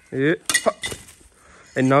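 A few sharp clicks and clinks, about half a second in, as a sickle hacks at dry stalks, set between short bits of voice.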